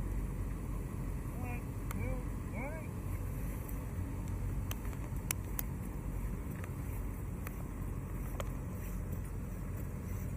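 A steady low rumble with a few short muffled voice sounds about two seconds in and scattered light clicks.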